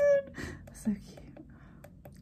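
A high-pitched animated character's voice calling, cut off within the first moment, then a woman's soft, breathy laughter, which fades to quiet room tone after about a second.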